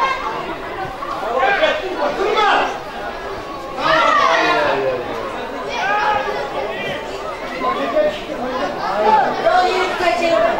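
Voices calling and shouting across a football pitch during play, in short bursts with several voices overlapping.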